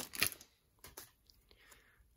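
Foil trading-card pack wrapper crinkling and crackling as the cards are pulled out of it, dying away within the first half second, followed by a few faint handling ticks about a second in.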